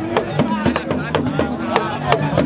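Ghanaian traditional hand drums beaten in a quick, driving rhythm, about four or five sharp strokes a second, over a crowd's voices.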